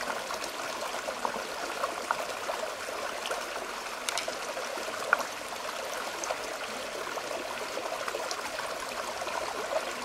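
Shallow stream trickling steadily over rocks, with scattered light clicks as mussel shells are handled on the stone, the sharpest about four and five seconds in.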